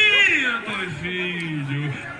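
A man's voice: speech with a long drawn-out, slightly falling vowel in the second half.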